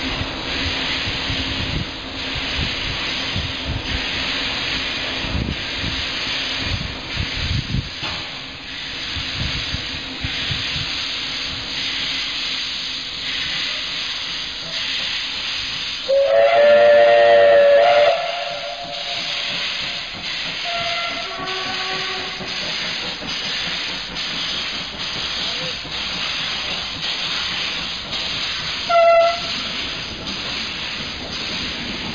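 Departing steam locomotive hissing steadily as steam vents from its open cylinder drain cocks, with a low rumble of the moving train. About halfway through, its whistle sounds loudly for about two seconds, and a short whistle toot comes near the end.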